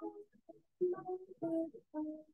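A voice singing a line of a simple children's English-lesson song, in short phrases with held notes and silent gaps between them, heard over a video call.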